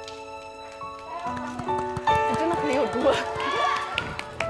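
Soft background music with sustained held notes, with indistinct voices over it from about a second in.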